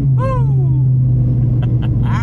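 Dodge Viper ACR's 8.4-litre V10 heard from inside the cabin, its drone dropping in pitch right at the start as the revs fall, then running steady at lower revs. A brief voice-like whoop sounds just after the drop.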